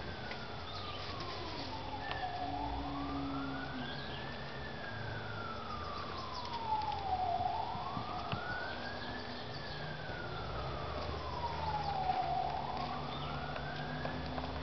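A siren wailing, its pitch rising and falling slowly, about once every five seconds, over a low steady rumble.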